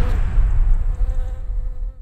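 A bee buzzing, a thin steady hum, over the low rumble of an explosion dying away; everything fades out near the end.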